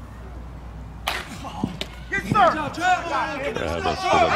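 A sharp crack of a slowpitch softball bat hitting the ball about a second in, followed by players' voices shouting.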